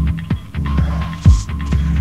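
Electronic club dance music from a 1990s DJ set recorded on cassette: a deep kick drum hits about once a second over a steady bass drone and a held high tone.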